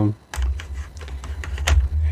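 A run of small hard clicks and knocks as rechargeable LED glass candles are handled and their on/off switches on the bottom pressed, over a low handling rumble.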